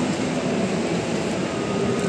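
Steady outdoor din of vehicles at a busy kerbside, with faint voices in the background.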